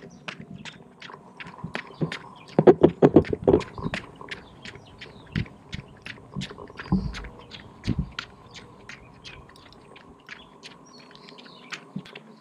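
Rapid repeated chirps, about four a second, carrying on steadily, over a faint steady high hum. A short run of five or six loud, lower pulses comes about three seconds in.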